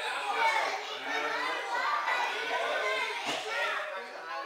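Young children chattering and calling out as they play, mixed with adult voices.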